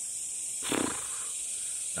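Steady high-pitched drone of insects in the trees, with one short vocal sound from a man about two-thirds of a second in.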